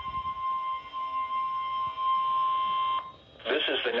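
NOAA Weather Radio 1050 Hz alert tone from a weather radio receiver's speaker, a steady high tone that cuts off about three seconds in. This is the tone-alert part of the Required Weekly Test. A low thump of the camera being handled comes at the start, and an announcer's voice begins near the end.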